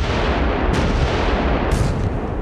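Heavy naval gunfire and shell explosions: a dense, continuous rumble with fresh sudden blasts about a second in and again near the end.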